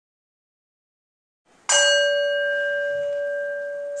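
Silence, then about a second and a half in a single bell strike: a clear ringing tone with several higher overtones that slowly fades. It is the cue that opens a new section of the psalm.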